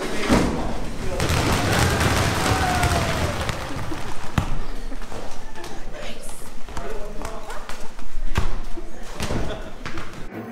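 A load of soccer balls spilling onto a concrete floor and bouncing, a dense clatter of thuds for the first few seconds that thins out to occasional single bounces. The sound echoes in a large hall.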